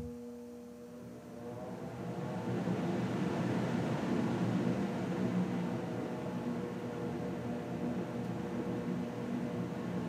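Blower door fan (Model 3) spinning up in cruise mode: a rising whine and rush of air that build from about a second in to about three seconds in, then run steady as the gauge holds the house depressurised toward 50 Pa.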